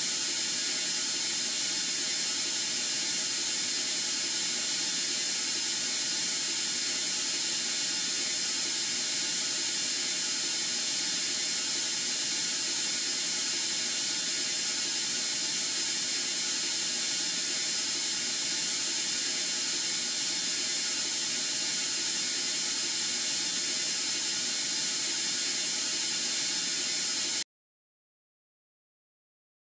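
Steady hiss of coolant spraying inside a CNC mill-turn machine's enclosure as a live tool works a turned part, cutting off suddenly near the end.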